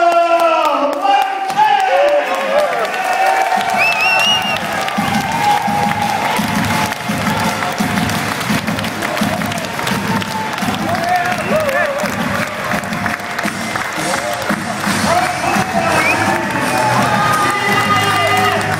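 Crowd cheering and shouting as a fighter's ring-entrance music with a steady beat starts about three and a half seconds in.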